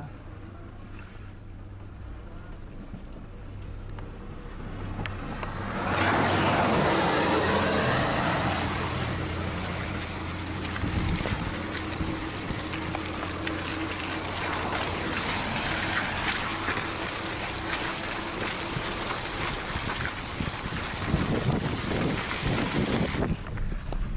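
Car engine running at low speed, heard inside the cabin. About six seconds in, loud, steady tyre and wind noise comes in as the car rolls over a wet, muddy dirt road, heard through the open window.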